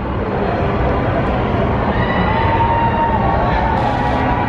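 Loud, steady hubbub of a busy street crowd and passing traffic, with a faint held tone for about a second midway.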